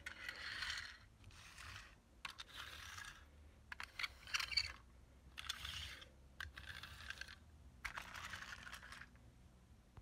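Plastic toy vehicles being handled and picked up off a carpet: a faint series of about seven short rustling, clicking bursts.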